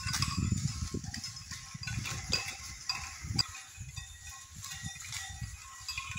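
A flock of sheep and goats grazing and moving through leafy undergrowth: irregular low rustling and thuds close to the microphone, with faint high chirps in the background and one sharper click about three and a half seconds in.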